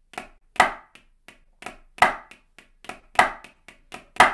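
Drumsticks on a practice pad playing even hand-to-hand 16th notes, with a louder flam accent coming round about every second and a quarter. This is the fla-fla rudiment played slowly.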